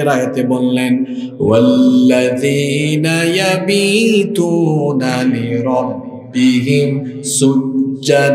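A man's voice chanting in a long-drawn, melodic tone through a microphone and PA system, the pitch rising and falling over held notes, with short breaks for breath about a second and a half in and again near six seconds.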